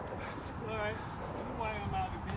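Two short wordless voice sounds, a wavering call about halfway through and another near the end, over a steady low background rumble.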